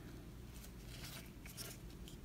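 Faint rustling of glossy Topps baseball cards being flipped through and slid against each other by hand, with a few soft ticks.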